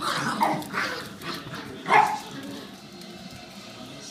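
Small dogs barking and yipping in rough play: a handful of short, sharp calls that fall in pitch, coming in the first two seconds, the loudest at about two seconds in.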